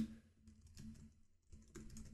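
Faint typing on a computer keyboard: a sharp keystroke at the start, then scattered quiet keystrokes in two short runs.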